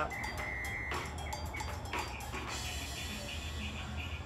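Plastic squeeze bottle of acrylic paint being handled and squeezed, with scattered small clicks and a brief high tone shortly after the start, over a steady low hum.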